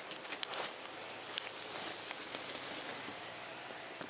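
Scattered light clicks and rustling from handling and moving around a seat cushion, with a brief hiss about two seconds in.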